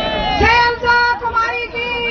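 Several high-pitched women's voices close by in a crowd, calling out in long, drawn-out tones that overlap one another.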